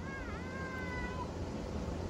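A small child's faint, drawn-out "hi" call, dipping in pitch and then held steady for about a second.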